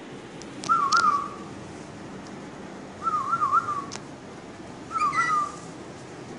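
Three short whistled phrases, each a quick up-and-down warble on a clear pitch, about two seconds apart.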